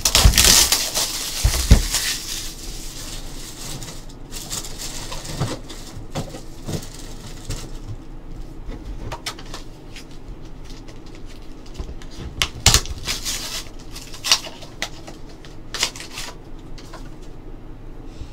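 A trading-card box being unwrapped: a crinkling tear of plastic wrap for the first few seconds, then scattered clicks and taps as card boxes and hard plastic card holders are handled.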